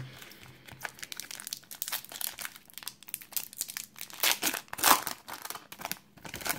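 Metallic foil wrapper of a trading-card pack crinkling as it is picked up and torn open by hand, in irregular crackles that grow louder about four to five seconds in.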